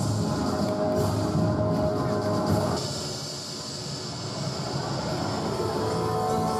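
Played-back soundtrack over the hall's speakers: music mixed with a steady rumbling sound effect for the spaceship crash, with a hiss joining about halfway through.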